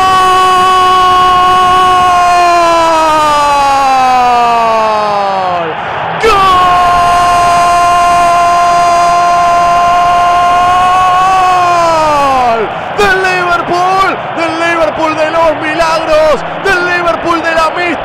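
Spanish-language radio football commentator's goal cry: a long drawn-out shouted "gol" held for about six seconds, its pitch sliding down at the end, then a second held "gol" of the same length. From about thirteen seconds in it gives way to rapid, excited shouted commentary.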